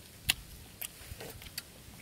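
Fish grilling on a wire rack over a charcoal stove, giving a few scattered sharp crackles; the loudest is about a quarter of a second in.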